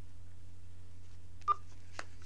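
Open telephone line on a recorded call: a steady low hum, one short electronic blip about one and a half seconds in, and a faint click at the end, as the accepted call connects.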